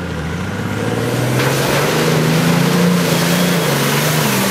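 A four-wheel-drive wagon's engine pulls steadily as it drives across dirt toward and past the listener. The engine note rises a little and grows louder as the vehicle nears, with tyre and wind noise building.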